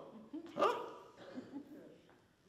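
Speech only: a man's short, rising "huh?" about half a second in, then faint voice sounds in a quiet hall.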